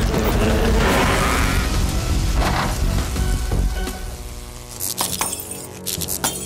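Cartoon music and sound effects. Near the end a steady electric buzz with sharp crackles comes in as the ceiling lights spark and short out.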